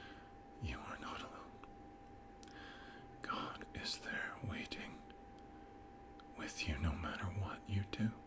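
A man whispering softly in three short phrases, with pauses between them, over a faint steady tone.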